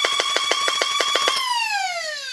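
Flywheel motors of a 3D-printed dual-magazine solenoid flywheel blaster running at a steady high whine while the solenoid pusher cycles rapidly, about eight clicks a second. About one and a half seconds in the clicking stops and the whine falls as the flywheels spin down.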